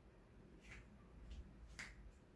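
Near silence with three faint, sharp clicks spread across two seconds, the last the loudest.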